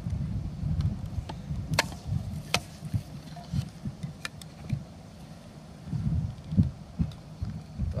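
A Fiskars X7 hatchet striking a piece of kindling wood in a few sharp knocks, two louder ones about two seconds in and fainter ones later, over low wind rumble on the microphone.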